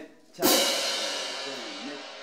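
A pair of hand-held crash cymbals struck together once, on the conductor's cue, about half a second in. The crash rings on and slowly fades.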